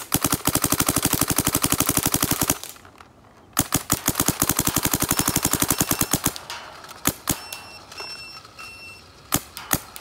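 Dye DSR paintball marker, stock bolt, firing on compressed air in NXL 10.5 ramping mode: two long rapid strings of shots at about ten a second, then a few single shots near the end.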